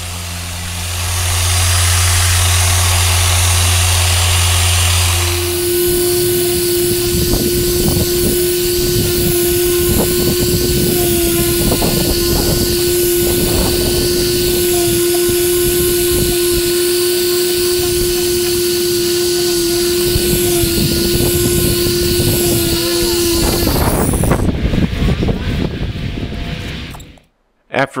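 Random orbital sander running against a fibreglass boat hull, sanding the gel coat with a 2000-grit Abralon pad. A low hum for the first five seconds gives way to a steady whine that lasts until shortly before the end, then the sound breaks off.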